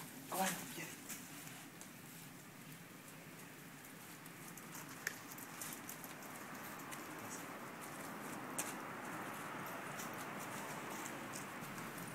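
Soft rustling in grass and dry fallen leaves as a group of dogs moves about, slowly growing louder over the second half, with scattered light clicks. A brief vocal sound comes about half a second in.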